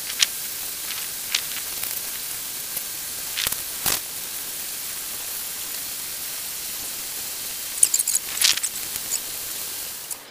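Steady hiss of water running through the flooded grow bed, with scattered crackles and rustles as a plant's root ball is worked loose and pulled from the rocky grow media, once about three and a half seconds in and again near the end.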